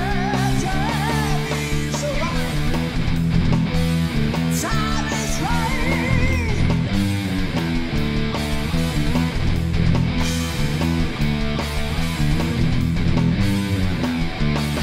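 Heavy metal band music: a distorted Ibanez RG2550Z electric guitar plays a lead line with bent notes and vibrato, over driving chords, bass guitar and a Roland electronic drum kit keeping a steady beat.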